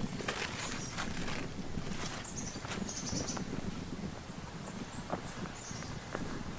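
Footsteps and plant rustling as someone walks along a garden path. Two short runs of faint, high bird chirps come partway through.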